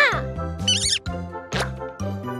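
Children's cartoon background music with a stepping bass line. Over it come a short cartoon character vocalization that glides down in pitch at the start and a wavering high trill in the middle.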